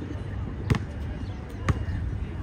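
A basketball bouncing on a hard outdoor court: two sharp bounces about a second apart.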